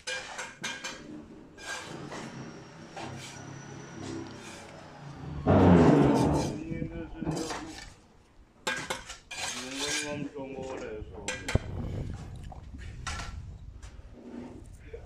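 Irregular clinks and knocks of metal and hard materials, with a loud burst of rushing noise about five and a half seconds in.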